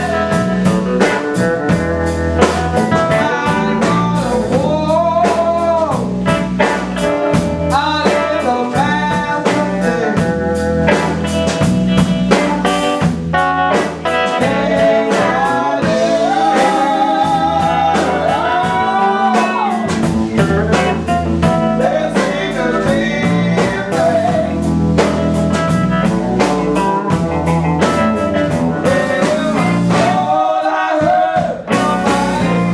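Live band playing a blues-style song: singing over a hollow-body electric guitar and a drum kit keeping a steady beat.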